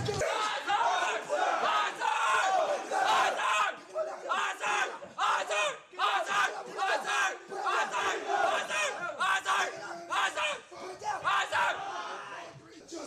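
Many men shouting at once: drill instructors yelling at recruits and recruits shouting back at full voice, the voices overlapping in quick, continuous bursts.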